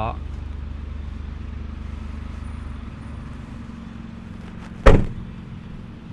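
A car's rear hatch (tailgate) shut with a single sharp thud about five seconds in, over a steady low background hum.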